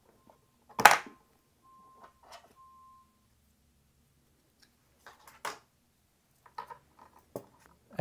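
A single sharp click just under a second in as the speaker's cable connector is pried off its socket with a spudger. It is followed later by a few small clicks and rattles of the plastic speaker module being handled. A faint high beep sounds briefly three times in the first three seconds.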